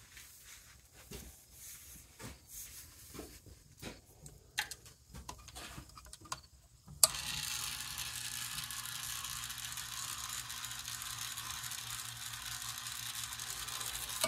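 Faint scattered taps and clicks from handling a wooden arrow with a steel broadhead. About halfway through there is a sharp click, and then a steady hiss with a low hum carries on.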